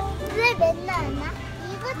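A little girl's high voice chattering playfully in short sing-song syllables, over background music.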